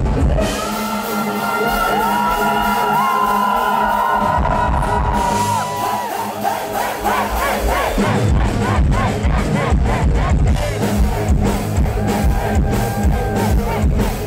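Live heavy-metal band music. For the first half there is a quieter, drumless passage of held melodic lines over keyboards. About eight seconds in, the full band comes back in with drums and bass.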